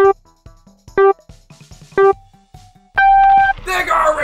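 Race-start countdown beeps: three short, equal tones a second apart, then a longer, higher tone that signals the go.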